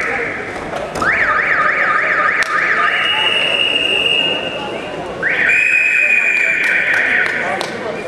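Shrill whistles over hall noise: a quick run of rising sweeps, then a long held high whistle, and a second long, slightly lower one about five seconds in.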